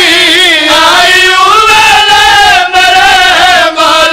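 A man's voice chanting a mournful elegy verse in long, wavering, held notes, loud and amplified through a microphone and PA. Two short breaks for breath come near the end.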